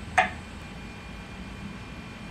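A woman's short vocal sound near the start, then steady room hiss.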